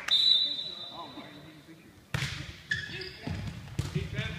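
A short referee's whistle at the start, then a volleyball struck on the serve about two seconds in, followed by more ball hits during the rally, with voices echoing in a large gym.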